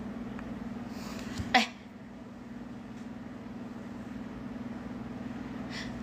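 A woman's single short, sharp vocal 'eh' about one and a half seconds in, falling quickly in pitch, over a steady low hum in the room.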